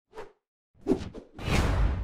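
Edited whoosh transition sound effects: a short swish, a sharp hit a little under a second in, then a longer, louder whoosh near the end.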